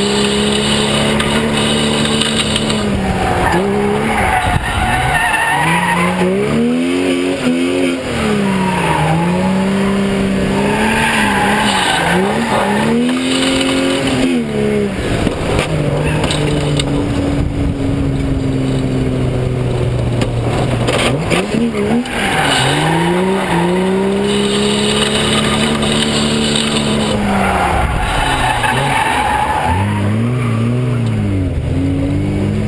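BMW E30 325's inline-six engine revving up and falling back again and again as the car is drifted, its pitch swinging every few seconds, with the tyres squealing as they slide. Heard close up from beside the front wheel.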